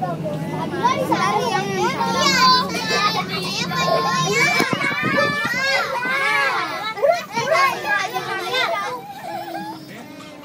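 Several children's voices at once, talking and calling out over one another, loud and overlapping throughout. A low steady hum runs underneath in the first half and weakens about halfway through.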